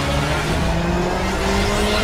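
Intro sound effect of a car engine revving, its pitch climbing steadily, mixed with music.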